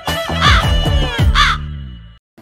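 Crow cawing twice as a title-card sound effect, over intro music with deep bass hits that fades out near the end.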